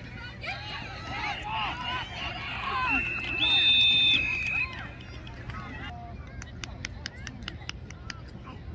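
Spectators and players shouting during a football play, then referees' whistles, two overlapping shrill blasts about a second and a half long, blowing the play dead at the tackle. Near the end, a run of sharp claps, about three a second.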